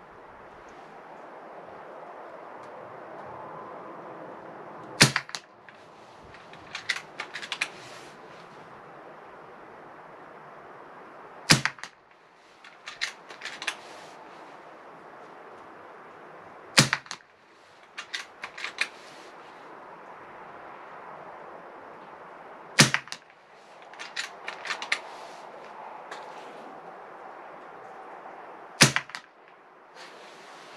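Hatsan Flash .22 PCP air rifle fired five times without a moderator, each shot a sharp "nailgun"-like crack, about one every six seconds. Each shot is followed a second or two later by a short run of lighter clicks.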